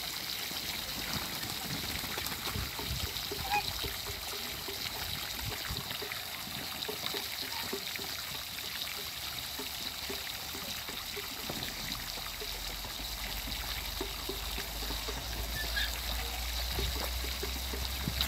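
Water running steadily from a garden hose into a shallow muddy puddle, with Muscovy ducks dabbling and splashing in it: a continuous pouring trickle over many small soft ticks, and a brief high chirp now and then.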